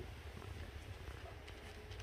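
Quiet room tone with a steady low hum and no distinct sound.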